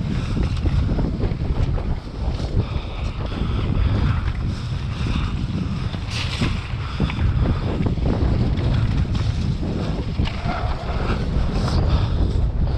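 Wind buffeting a GoPro's microphone in a constant low rumble as a downhill mountain bike rides fast over a rough, wet dirt trail, with frequent short knocks and rattles from the tyres hitting rocks and roots and the bike's chain and suspension.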